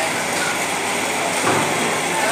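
Loud, steady background noise with no clear single source, and a brief knock about one and a half seconds in.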